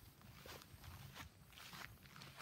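Faint footsteps on grass, soft and irregular, over a low background hum.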